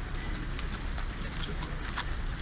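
Footsteps of a group of soldiers walking in step on a paved street, a scattering of irregular sharp heel clacks.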